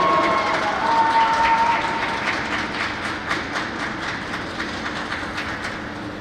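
Scattered clapping from a small crowd of spectators, many irregular claps that thin out and fade.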